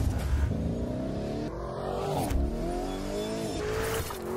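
Lamborghini Urus twin-turbo V8 accelerating hard, its note rising, dropping at an upshift a little over two seconds in, then climbing again to another shift near the end. The sound comes in with a sudden loud hit.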